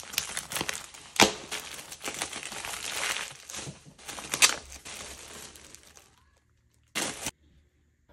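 Plastic poly mailer torn open and its plastic contents handled: continuous crinkling and rustling, with two sharp, louder rips about a second in and again around four and a half seconds. It stops about six seconds in, apart from one brief rustle near the end.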